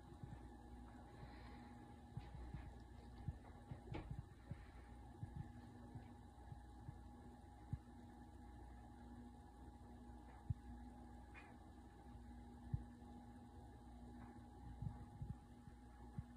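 Near silence: a faint steady hum from a desktop computer running, with a few faint clicks and knocks.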